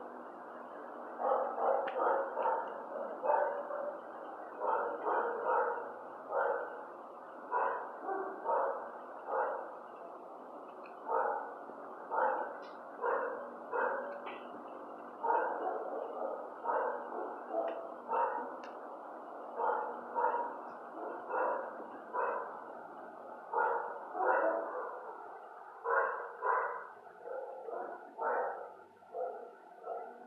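Shelter dogs in the kennels barking over and over, in short barks that come in quick clusters.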